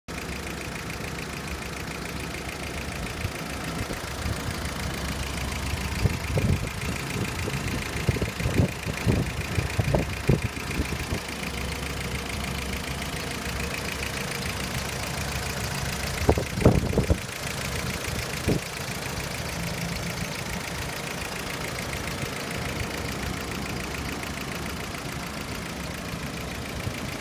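Mitsubishi Jeep J3's carburetted four-cylinder petrol engine idling steadily with an even pulse, heard with the bonnet open. A few louder dull thumps come about a quarter of the way in and again past halfway.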